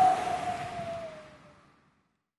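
Closing logo sting: one held tone over a noisy wash, falling slightly in pitch as it fades away and ending about a second and a half in.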